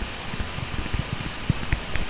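Soft taps and scratches of a stylus writing by hand on a tablet, over a steady microphone hiss.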